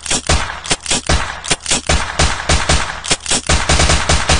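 Sampled machine-gun fire in a dance song: rapid, uneven volleys of sharp shots, several a second.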